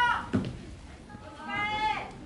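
A person's high-pitched, drawn-out calls, one at the start and one near the end, each rising then falling in pitch.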